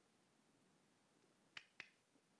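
Near silence broken by two short, sharp clicks a quarter of a second apart, about a second and a half in: a laptop being clicked or typed on.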